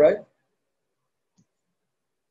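A man briefly says "all right", then near silence with one faint low blip about a second and a half in.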